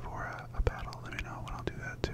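A man whispering close to the microphone, with a few small sharp clicks and a steady low hum underneath.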